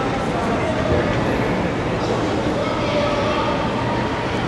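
Steady rumbling hall noise with voices calling out faintly over it.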